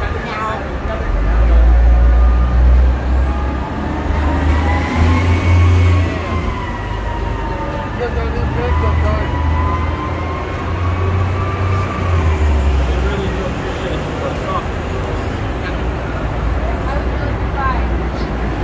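Street traffic at an airport curb: the low rumble of idling and passing vehicles swells and eases. From about four seconds in, a wailing tone slowly rises and falls for several seconds.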